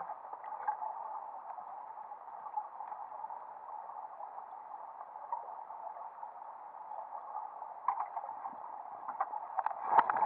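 Steady, muffled rush of stream water heard from a camera held underwater, with a few faint clicks and knocks near the end.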